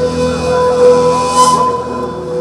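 Live band music: a bamboo suling flute holds a long, steady note while sliding melodic lines weave around it.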